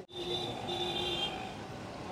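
Steady street background noise with road traffic, a faint held tone showing for about the first second; it begins abruptly after a brief dropout.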